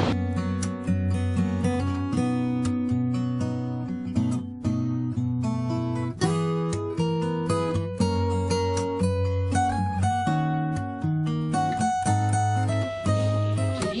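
Background music: a plucked acoustic guitar playing a melody of quick, clearly separated notes that ring and fade.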